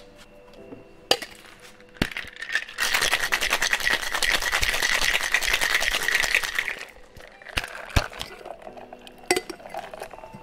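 Ice rattling fast and hard inside a metal cocktail shaker being shaken for about four seconds. A couple of sharp clinks come before the shaking, and a few separate knocks after it.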